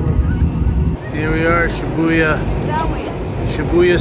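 Steady low rumble of a train's passenger cabin, which cuts off about a second in; after that a man talks over outdoor street noise and wind on the microphone.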